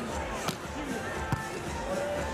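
Beach volleyball struck by hand, two sharp contacts less than a second apart: a serve followed by the receiving pass. Both sit over crowd murmur and faint background music.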